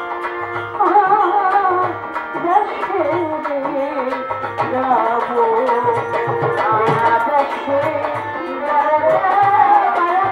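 Live Bangla Baul folk music: a bowed violin playing a wavering, sliding melody over a steady drum beat.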